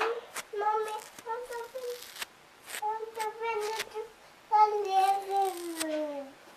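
A high voice singing a few long held notes, the last one sliding down near the end, broken by sharp scratching strokes of a wire dog comb pulled through wool fleece.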